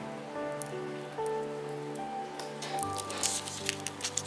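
Background music of soft, held, piano-like notes; from about halfway in, dry crackling as fingers peel the papery brown tunic off a tulip bulb.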